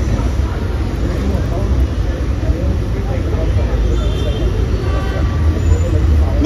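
Steady low rumble of outdoor street and traffic noise, with faint voices in the background.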